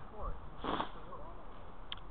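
A short, breathy sniff close to the microphone about three-quarters of a second in, over faint talking in the background, with a brief high squeak near the end.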